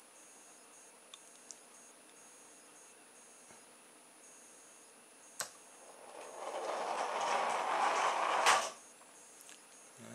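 A sharp click about five seconds in as the infrared-triggered relay release lets go, then a rubber-band-powered car on CD wheels rolling across a wooden floor, the rolling noise building for about two and a half seconds and ending in a knock before it cuts off.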